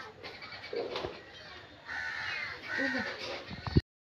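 Harsh bird calls, several in a row, the loudest in the second half, with a sharp knock near the end.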